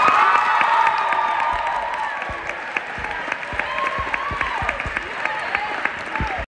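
Audience applauding and cheering after the song ends, with a loud shouted cheer right at the start and more shouts rising and falling over the clapping.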